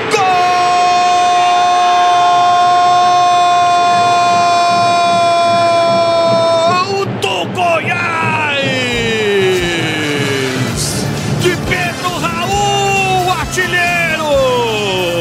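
A football commentator's goal cry: one long, loud, held "gooool" of about seven seconds, followed by further shouted calls that fall in pitch.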